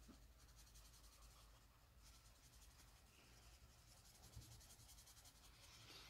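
Near silence: faint scratching of a felt-tip marker tip being rubbed across paper while colouring.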